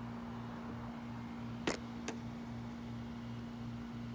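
A steady low mechanical hum with a faint regular pulsing in it, and two light clicks about half a second apart near the middle.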